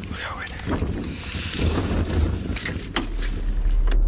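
Wind buffeting the camera microphone, a deep rumble with a hiss over it, under muffled voices, with two short knocks near the end.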